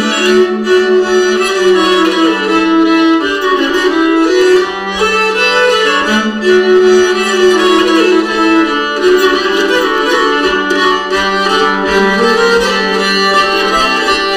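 Two nyckelharpas, Swedish keyed fiddles, bowed in duet playing a Rheinländer dance tune: a moving melody over a lower sustained part.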